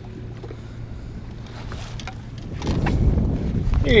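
Wind rumbling on the microphone over a low, steady hum, growing louder about three seconds in.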